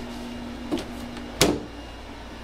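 Steady hum of an air conditioner running, with a sharp click about one and a half seconds in and a fainter one a little before it.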